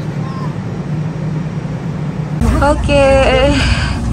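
Steady low hum of a railway station platform beside a standing Frecciarossa high-speed train, with faint distant voices. About two and a half seconds in it gives way suddenly to a person speaking over a low rumble.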